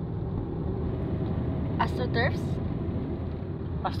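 Steady low rumble of a car heard from inside its cabin: the engine and road noise while it drives.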